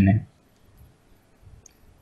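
Faint, scattered clicks of a stylus tip tapping and sliding on a tablet's glass screen while handwriting.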